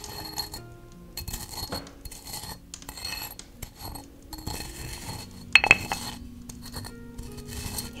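A small hard vessel handled close to the microphone, with scraping and light clinking as its contents are worked, and one sharp clink that rings briefly about five and a half seconds in. Soft background music plays underneath.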